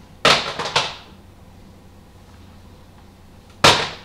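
Plastic Blu-ray cases being handled: a quick rattle of several clacks about a quarter second in, then a single sharp clack near the end.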